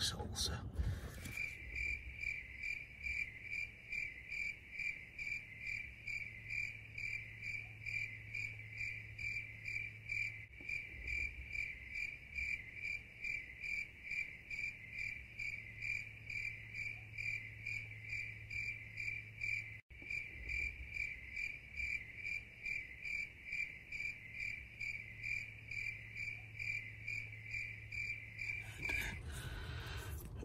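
Crickets chirping in a quick, even, unbroken pulse over a low steady hum, starting about a second in and stopping shortly before the end.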